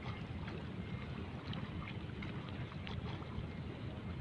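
Wind buffeting the microphone at the seafront: a low, uneven rumble with a faint hiss above it.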